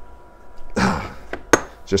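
Stainless steel mechanical mod being screwed tight by hand: a short scraping rush about a second in, then one sharp metallic click a moment later as it locks up or is set down on the bench mat.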